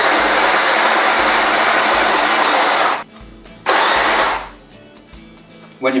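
Graef electric burr coffee grinder running and grinding espresso beans for about three seconds, stopping, then a second short burst of under a second around four seconds in. The burrs are turning while the grind setting is adjusted finer.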